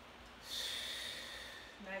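A person's long, hissing breath out through the nose, lasting about a second and starting about half a second in.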